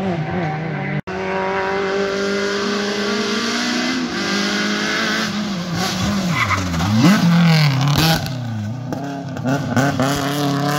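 Rally car engine revving hard, its pitch dropping and climbing again as the driver lifts and changes gear through the tyre chicanes. Tyres squeal and scrub over the engine, loudest about two-thirds of the way in. The sound cuts out for a moment about a second in.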